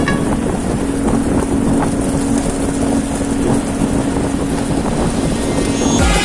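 Ford Everest SUV driving along a gravel track: a steady engine hum under the rumble of tyres on loose gravel, with wind buffeting the microphone.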